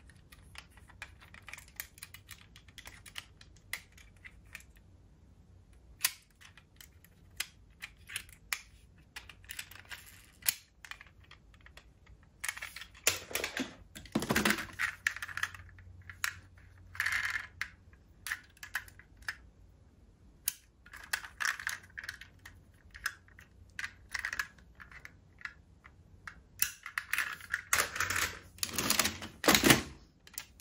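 Diecast metal model cars being handled over a plastic tub full of toy cars: irregular small clicks and taps. Denser spells of clattering come about halfway through and again near the end, as cars are swapped in and out of the pile.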